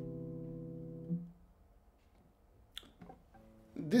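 A chord on a Michel Belair cedar-top double-top classical guitar with Indian rosewood back and sides, ringing and fading, cut off about a second in. A few faint clicks follow in the quiet.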